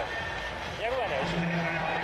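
Broadcast commentary: a man's voice speaking briefly, over a steady low background hum.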